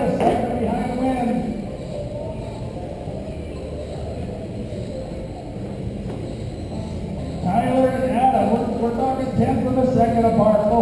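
Indistinct, echoing voice over a public-address system, briefly at the start and again from about three-quarters of the way through. In between, a steady background of electric RC race cars running on the track in the hall.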